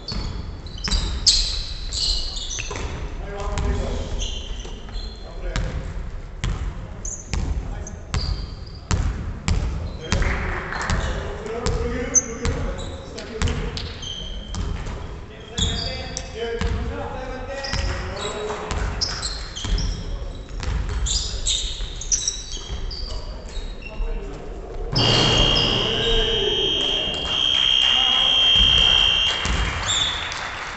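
A basketball bouncing on a wooden gym floor during play, with voices echoing in the hall. Near the end a steady high-pitched buzzer sounds for about four seconds: the scoreboard buzzer ending the game.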